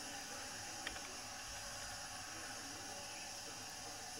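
Steady faint hiss of room tone, with one faint click about a second in.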